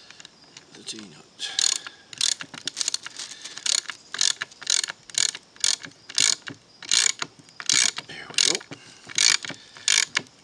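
Ratchet wrench clicking in short, regular bursts, about one and a half strokes a second, as a bolt is cranked to draw a T-nut into a wooden board.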